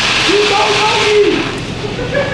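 Automatic car wash spraying water against the car, heard from inside the closed cabin as a steady hiss that dies away about a second and a half in.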